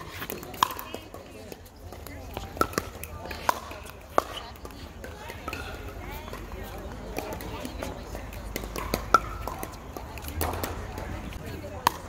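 Pickleball paddles striking a plastic ball during a rally: sharp pops spaced irregularly, a second or two apart, over a background of players' voices from the surrounding courts.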